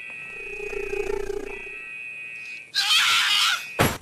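Sound effects over a steady high electronic whine: a low, animal-like growl early on, then a loud, harsh burst of noise about three seconds in, ending in a sharp click.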